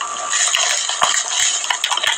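Plastic postal mailer crinkling and rustling as it is handled and a padded paper envelope is pulled out of it: a dense crackle of many small clicks.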